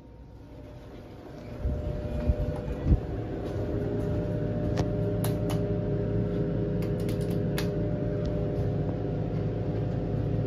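Westinghouse traction elevator, modernized by Schindler, setting off upward: the car doors close with a thud about three seconds in, then the car runs with a steady hum and rumble that swells slowly as it gathers speed. A few sharp clicks come in the middle.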